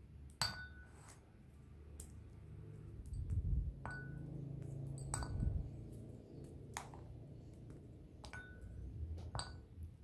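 Squares of milk chocolate snapped off a bar and dropped into a ceramic bowl: about eight sharp snaps and clinks, several leaving a short ringing tone from the bowl. Low handling noise swells between about three and six seconds in.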